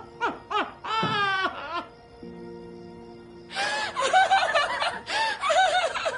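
A woman crying and laughing at once, in wavering, wailing sobs that break off after about two seconds and start again more strongly halfway through. Soft background music of held chords plays under them.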